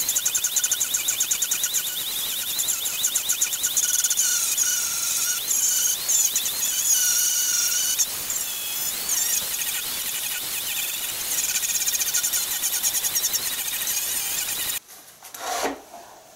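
Electric angle grinder with a flap disc sanding a carved wooden shovel: a high motor whine over the rasp of the abrasive on wood, wavering as the disc is worked across the surface. The grinding cuts off suddenly near the end, followed by a couple of brief knocks.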